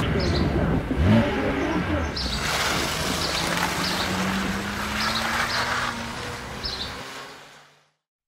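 Toyota Crown Athlete car engine running as the car pulls away, its engine note rising slowly, then fading out near the end.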